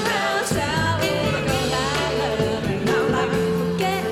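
Live pop band music with a woman and a man singing, over a sustained bass line and drums.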